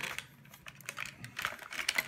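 Irregular clicks and taps of a plastic Dyson V6 vacuum power head being handled and shifted on a hard countertop; the motor is not running.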